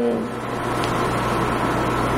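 Steady room noise, a hiss with a low, even hum underneath, as in a pause between sentences of an indoor interview.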